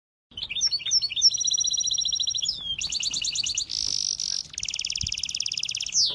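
A small red-headed finch singing close up: a long, varied song that opens with quick sliding chirps, then runs into fast trills with a buzzy phrase in the middle.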